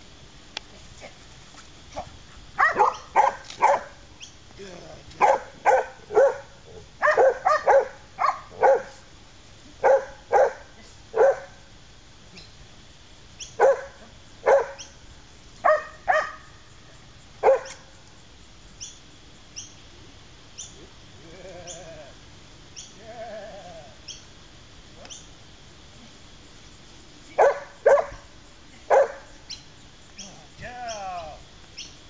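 A dog barking in quick runs of two to five barks, with pauses of a few seconds between runs and a longer gap in the middle, where a few fainter drawn-out sounds come instead.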